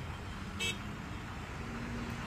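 Road traffic at a standstill: a low, steady rumble of vehicles, with one brief horn toot just over half a second in.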